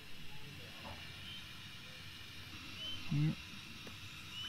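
Low outdoor background noise with a soft low rumble, and a few faint short high chirps a second or so apart.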